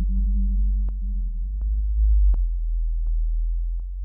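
Elektron Analog Four synthesizer holding a steady deep bass tone, with a higher held note that fades out about halfway through. Short, sharp clicks fall at an even pace, about three every two seconds.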